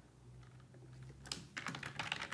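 Typing on a computer keyboard: quiet at first, one keystroke a little over a second in, then a quick run of keystrokes near the end.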